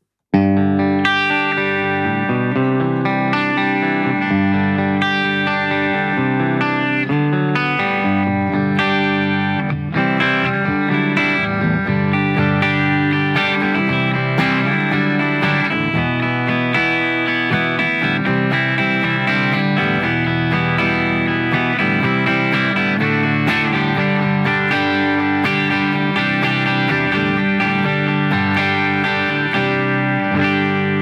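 Electric guitar, a handmade Gray Guitars HSS S-style with its humbucker selected, played clean through an amp: flowing chords and picked note lines, starting just after a moment's silence.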